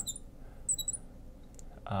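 A few short, high squeaks of a marker writing on a glass lightboard, with a man's voice starting again near the end.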